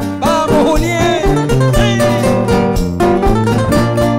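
Two acoustic guitars playing a pasillo instrumental passage live, a quick plucked melody over chords.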